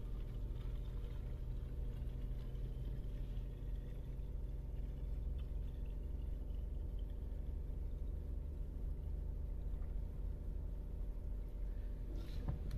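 Petrol poured from a plastic jug into a plastic fuel-mixing bottle: a faint trickle whose pitch rises as the bottle fills. Under it runs a steady low hum.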